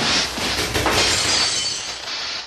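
Glass bottles smashing, with two crashes about a second apart followed by tinkling fragments.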